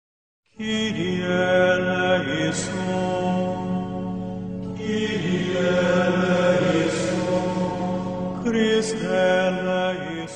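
Title music of slow choral chant: several voices sing long held chords. It starts after half a second of silence, with new phrases beginning about five and eight and a half seconds in.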